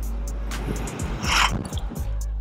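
Swapped 5.3 L LS V8 in a 1989 Chevrolet Caprice running while the car is driven, a steady low drone heard from inside the cabin, with background music over it. The worn engine is not holding oil pressure.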